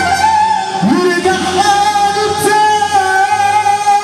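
Egyptian sha'bi wedding music: a male singer sings long, ornamented, gliding notes through a microphone over loud amplified band accompaniment.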